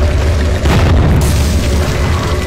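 Cinematic boom-and-crash sound effect of a wall bursting apart, over a deep sustained rumble. The main impact comes about two-thirds of a second in and is followed by a hissing spray of debris.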